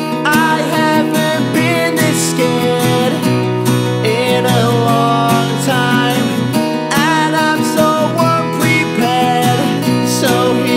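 Acoustic guitar strumming chords steadily, with a male voice singing a melody over it.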